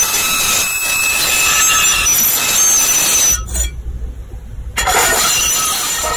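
Loud, harsh scratching and rubbing on a microphone, a hissing noise with thin squealing tones in it. The high hiss cuts out for about a second in the middle, leaving a low rumble, then returns.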